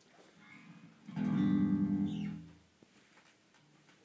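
Amplified electric bass guitar: a note is plucked about a second in, rings for about a second and a half and fades out.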